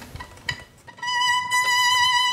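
Violin playing one long, high bowed note that starts about a second in and is held steady.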